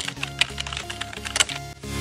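Computer keyboard typing sound effect, a quick, irregular run of key clicks, over soft background music.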